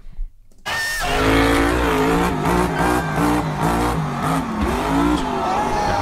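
Monster truck's supercharged V8 engine revving, heard from the arena footage, with pitch rising and falling. It starts suddenly after a brief silence near the start.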